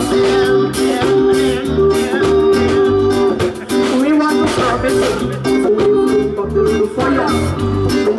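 Live roots reggae band playing: electric bass, drum kit and a woman singing into a microphone.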